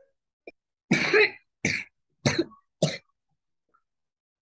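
A person coughing four times in quick succession, the first cough the longest.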